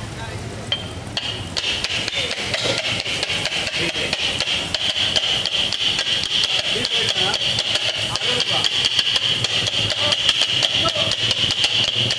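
A pair of steel kothu parotta blades beating on a flat griddle (tawa) as they chop egg kothu parotta, giving rapid, rhythmic metallic clanging. After a brief lighter patch at the start it settles into a fast, continuous ringing clatter that grows louder toward the end.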